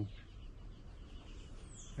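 Faint outdoor ambience: a low steady wind-like rumble with faint bird calls, including a brief high falling note near the end.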